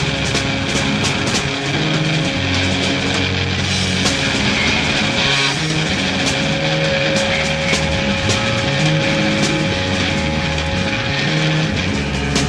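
Live rock noise: loud distorted electric guitar feedback and drone with irregular crashing cymbals and drums. A steady feedback tone holds from about halfway through to near the end.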